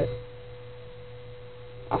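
Steady low electrical hum with a thin, unchanging tone above it, with no other sound until a voice starts near the end.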